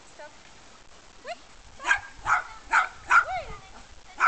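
A dog barking four times in quick succession in the second half, about two or three barks a second, after a short rising whine.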